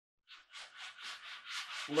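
Sandpaper, 60-grit, rubbed back and forth in the wooden barrel channel of a muzzleloader rifle stock: quick scratchy strokes, about six a second, starting shortly after the start, taking down high spots so the barrel will sit flat in the channel.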